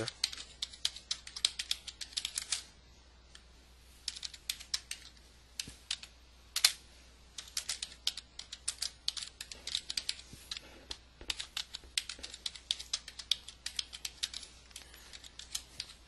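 Computer keyboard typing in quick runs of keystrokes, broken by a pause of over a second near the start and one louder key strike about six and a half seconds in.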